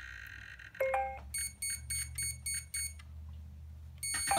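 Electric RC helicopter's electronics powering up as a 6S flight pack is plugged in: a short run of tones stepping up in pitch, then about six quick identical beeps, over a faint low hum.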